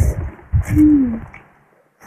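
Noisy slurping and eating of noodles in two rough bursts, with a short, falling hum-like tone about a second in; the sound stops abruptly near the end.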